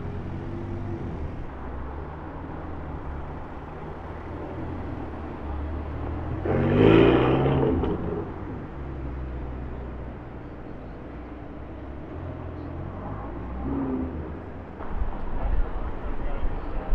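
Sports car engines running as cars pull away one after another, with one car accelerating hard about seven seconds in, its revs rising sharply. Lower engine and traffic noise fills the rest.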